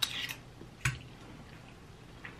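A few short clicks and mouth sounds from eating off a fork: a small cluster at the start and a sharper click a little under a second in, which is the loudest.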